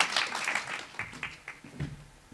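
Audience applause fading away into a few scattered claps.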